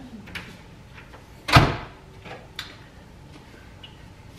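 A microwave oven door being shut, one sharp clunk about one and a half seconds in, with a few light clicks of handling around it.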